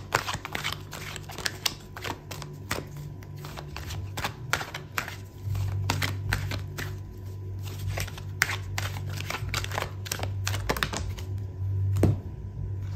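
Oracle card deck being shuffled by hand: a long, irregular run of quick card snaps and flicks, over a low steady hum.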